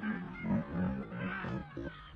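Lion growling as it grapples with a sable antelope: a run of low growls, loudest about half a second in.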